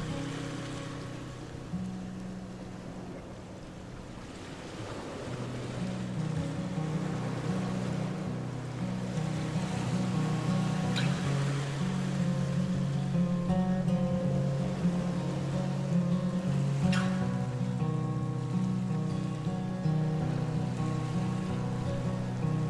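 Background music of slow, held low notes that change in steps, growing louder after the first few seconds, with a brief faint click about halfway through and another later on.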